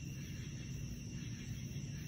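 Faint, steady low rumble of outdoor background noise, with no distinct sound standing out.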